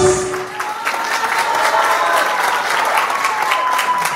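Audience applauding and cheering, with a long high cheer held over the clapping, just as a sung stage number ends; the singers' last held chord stops right at the start.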